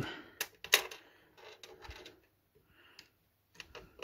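Sharp clicks and light scraping of a drive being handled and pressed into its mount in a PC case: two loud clicks within the first second, then softer rubbing and a few faint clicks near the end.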